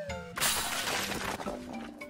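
Cartoon crash-and-shatter sound effect of a wrecking ball smashing through a wall: a sudden loud break about half a second in that scatters and fades over about a second, over light background music.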